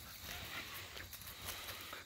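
Faint, irregular footsteps on grass as a man and a puppy on a leash walk across a lawn.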